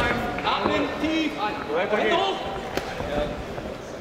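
Men's voices shouting over one another in a fight arena, with a few sharp thumps, the loudest right at the start.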